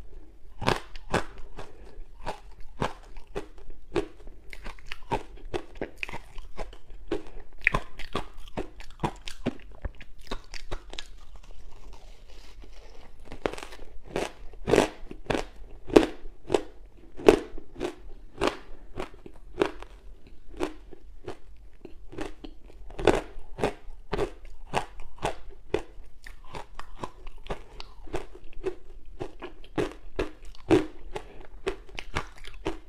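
Close-miked biting and chewing of dry matcha ice chunks: a steady run of sharp crunches, roughly one to two a second, easing briefly near the middle.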